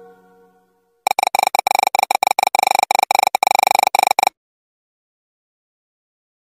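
Electronic music: a held chanted note fades out, then a bright synthesized tone stutters in rapid even pulses, roughly ten a second, for about three seconds and cuts off suddenly into silence.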